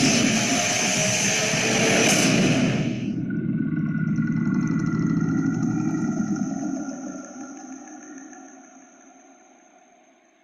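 Horror trailer soundtrack: a loud, dense rumbling swell that cuts off suddenly about three seconds in, leaving a high sustained drone of several held tones that slowly fades out.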